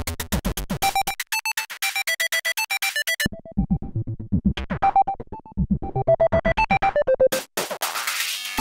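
Teenage Engineering PO-20 Arcade pocket operator playing a fast chiptune pattern of square-wave synth notes over a kick drum, with punch-in effects toggled on the fly. The bass and drums drop out about a second in and come back a couple of seconds later, the lead cuts out briefly just after, and the pattern stutters near the end.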